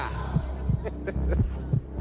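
Heartbeat-like low thumping beat over a steady low hum: a tension sound effect in the show's soundtrack.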